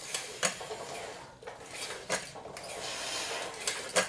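Home gym cable machine clicking and clinking several times as its fly arms swing and the weight stack moves, with breathing.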